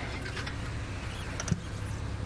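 Open safari vehicle's engine running steadily at low revs, with a single sharp knock about a second and a half in.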